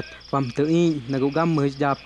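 Crickets chirping steadily, about five chirps a second, under a man's voice speaking.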